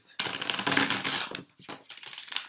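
Tarot cards being riffle-shuffled by hand on a tabletop: a rapid flutter of card edges clicking past each other for about a second, then a shorter, quieter run near the end as the deck is bridged back together.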